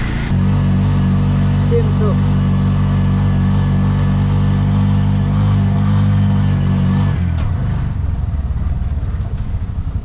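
Motor vehicle engine running loud and steady, then changing about seven seconds in to a rougher, pulsing lower sound as the revs fall.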